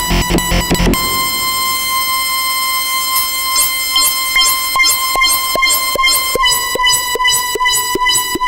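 Improvised electronic music played on a Novation Peak synthesizer. About a second in, the deep bass drops out, leaving a held high tone over short plucked notes that settle into a steady pulse of about two and a half a second.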